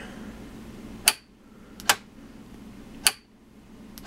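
A homemade contactor's 12-volt solenoid being switched on and off, its plunger snapping the electrode carriage across: three sharp clacks about a second apart, and a fourth right at the end.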